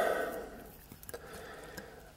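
Quiet room tone with a few faint, short clicks from metal forceps and a fine blade working into a spider egg sac.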